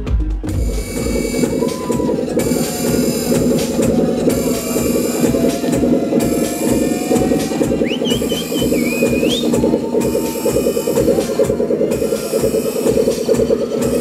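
Minimal techno played loud over a club sound system and recorded from the crowd, going into a breakdown: the kick drum drops out about half a second in, leaving a dense, fast-pulsing synth texture with hiss above it. A short shrill whistle-like glide cuts through about eight seconds in.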